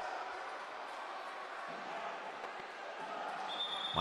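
Indoor futsal arena ambience: a steady crowd hum from the stands with a few faint knocks of the ball and players on the court. A thin steady high tone comes in near the end.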